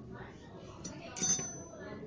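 Small metal repair tools clinking together as they are handled, with one light metallic clink about a second in that rings briefly.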